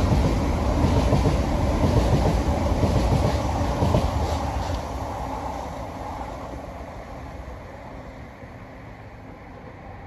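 A high-speed electric multiple-unit train, a Class 395 Javelin, passing close by. The rumble and rush of its wheels on the rails is loud for the first four seconds or so, then fades steadily into a distant rumble as the train runs away.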